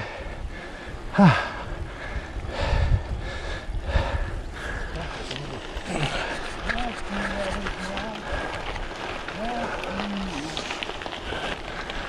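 A cyclist breathing hard on a steep climb, with a short vocal 'ah' about a second in and brief voiced grunts in the second half, over steady tyre and wind noise.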